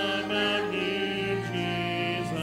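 Church choir singing a slow worship song, led by a man's voice at the microphone, in long held notes.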